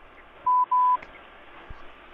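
Two short electronic beeps at one steady pitch, the second a little longer than the first, followed later by a soft low thump.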